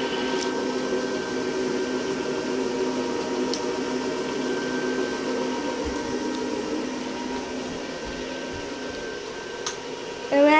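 The built-in electric blower fan of an inflatable snowman running with a steady hum that keeps the figure inflated.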